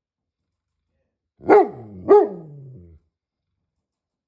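Great Pyrenees barking twice, about half a second apart, each bark deep and falling in pitch as it trails off.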